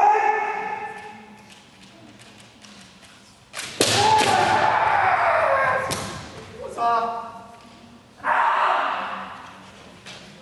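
Kendo fencers' kiai shouts, several loud drawn-out yells. The longest, in the middle, rises and then falls in pitch. Sharp cracks of bamboo shinai striking armour come through in a reverberant hall.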